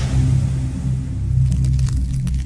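Sound design for an animated logo intro: a deep, steady low drone under a fading hiss, with a run of sharp clicks from about one and a half seconds in.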